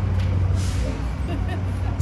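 City street traffic: a steady low rumble with a short hiss a little over half a second in.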